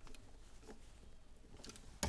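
A few faint ticks and small clicks of a screwdriver turning down a wire's terminal screw on an occupancy sensor switch.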